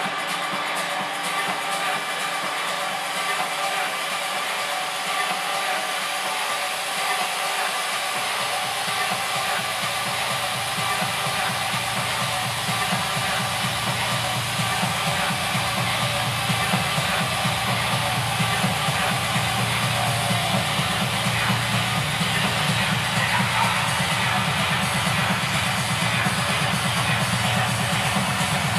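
Electronic dance music from a DJ set played over a club sound system. The bass is filtered out until about eight seconds in, when it drops back in under a steady beat.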